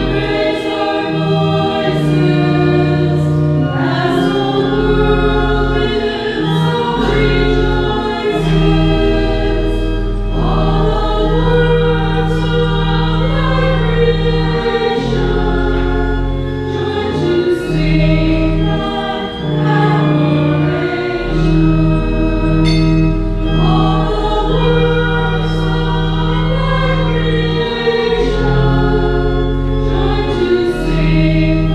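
A choir singing a hymn over long, steady held low notes from an accompanying instrument.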